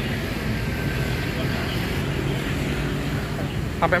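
Steady low rumble of a vehicle engine and road traffic, with a man starting to speak near the end.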